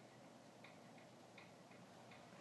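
Near silence: room tone with faint ticks recurring at a steady pace, a few per second.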